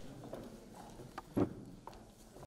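Footsteps and a few scattered knocks on a hard floor in a large room, the loudest a single thud about one and a half seconds in.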